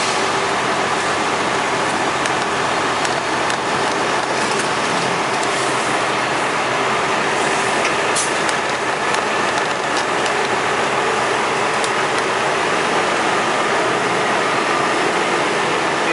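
Tractor-trailer's diesel engine running steadily at low speed with the even rumble and hiss of the cab, heard from inside the cab as the truck creeps into a tight turn onto a truck scale.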